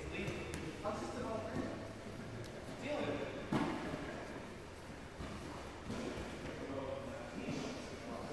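Indistinct voices and grappling noise echoing in a large hall, with one sharp thud about three and a half seconds in as a standing pair of grapplers goes down onto the mat.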